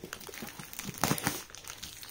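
Scissors cutting along the edge of a plastic padded mailer, the plastic crinkling and crackling as it is handled and snipped, loudest about a second in.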